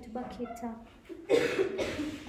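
A woman coughing, loud and harsh, starting about a second and a half in, right after a short stretch of her speech.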